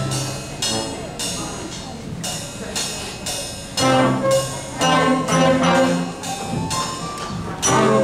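Small school band with trombone and saxophone playing a tune in held brass and reed notes, over percussion struck about twice a second.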